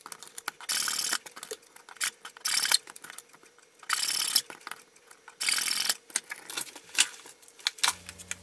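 A wide blade pressed down through thin basswood strips, cutting them to length one after another: about five short, crisp crunching cuts, roughly one every second and a half, the last a sharp click near the end.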